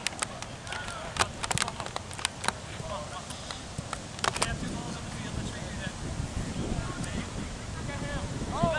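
Soccer field sounds: short shouts from players, a few sharp knocks in the first half, and a steady wind rumble on the microphone.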